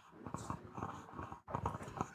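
Faint, irregular clicks and rustles of a handheld microphone being handled as it is passed to someone in the audience.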